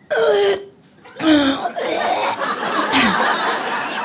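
A woman imitating the sound of sleep apnea with her voice: two short vocal noises in the first second and a half. Then an audience laughing.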